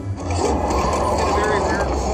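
Slot machine game sound effect: a loud, wind-like rushing whoosh that starts a moment in and holds steady as the bonus animation blows the houses on the reels apart.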